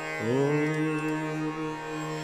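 Male Hindustani khyal voice in Raga Darbari Kanada sliding up into one long held note, over a steady tanpura drone.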